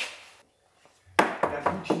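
A quick run of sharp taps and knocks from a hand tool against the steel sill and underbody of a Mercedes-Benz W116, starting a little over a second in after a short near-silent gap.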